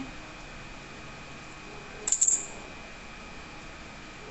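A small hard object, such as a modelling tool, is set down and clatters briefly on a granite worktop: a quick cluster of bright clicks about two seconds in.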